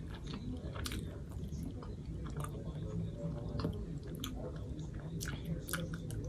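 A person chewing food, with scattered short mouth clicks.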